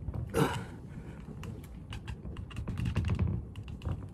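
Plastic exercise wheels rolling back and forth on a wooden floor, a low rumble broken by many light clicks and rattles. About half a second in, a single strained exhale falls in pitch.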